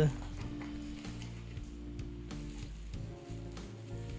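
Soft background music with held, sustained notes, under faint crinkling and ticking from plastic packaging being handled.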